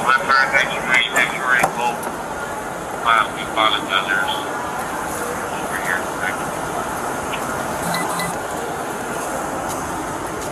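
Indistinct voices for the first few seconds, then a steady background noise.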